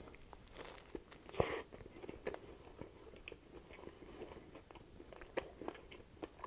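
Bite into a chicken sandwich with bacon, lettuce and tomato on a soft bun, then chewing with small wet mouth clicks. One louder bite comes about a second and a half in.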